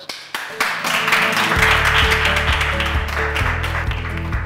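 Audience applauding, with background music with a steady bass line coming in about a second and a half in.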